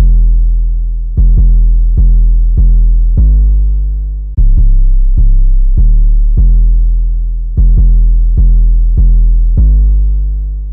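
A trap 808 bass played on its own: deep, sustained 808 notes, each starting sharply and fading slowly. They run in a simple pattern that follows the melody, and the phrase repeats about every three seconds.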